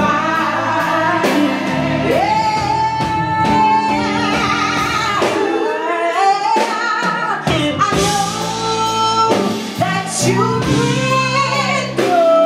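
Live band music with a female lead vocalist singing, including several long held notes.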